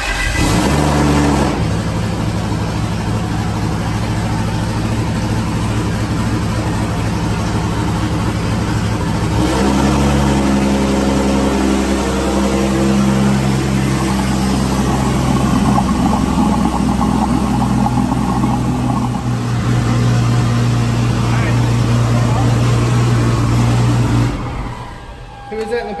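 Engine of a turbocharged Toyota Supra race car (Precision 8385 turbo) starting at once and idling steadily on its first run after an oil change. The note changes about nine seconds in, and the engine is switched off about two seconds before the end.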